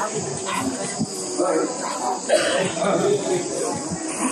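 Indistinct voices of people talking, no words clear enough to make out, over a faint steady hiss.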